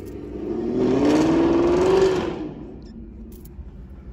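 A supercar's engine accelerating hard, its pitch rising for about two seconds before it fades away, heard from inside a parked car.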